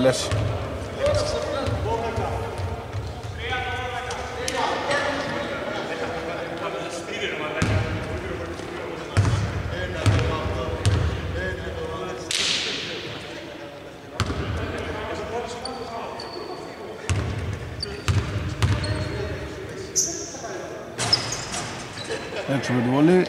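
A basketball bouncing on a hardwood court at irregular intervals, with players' calls echoing in a large, near-empty arena. There are a few short high squeaks.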